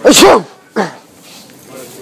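A very loud, deliberately exaggerated human sneeze at the start, with a shorter second burst just under a second later.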